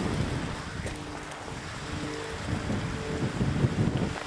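Wind blowing across a handheld camcorder's microphone: a steady rumbling rush of noise.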